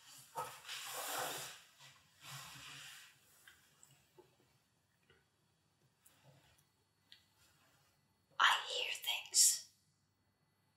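A person whispering in short breathy bursts: two in the first three seconds, then a pause, then louder ones near the end.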